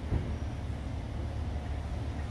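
Low, steady rumble of street traffic, with no clear single event standing out.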